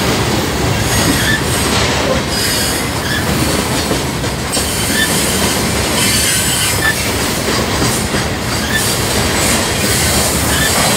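Open-top freight cars of a long freight train rolling past close by: a steady loud rumble and clatter of steel wheels on the rails, with brief brighter squeal-like rises.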